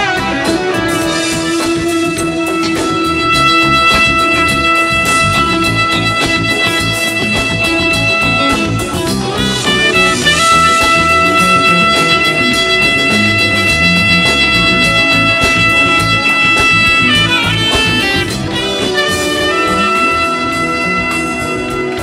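Live band playing an instrumental passage: a lead instrument holds long sustained notes over drums and bass.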